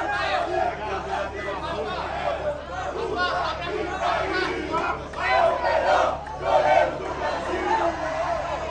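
Crowd of football supporters shouting and cheering, many voices at once, with two louder surges of shouts a little past the middle.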